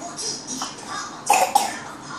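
A short cough, a burst in two quick parts about one and a half seconds in.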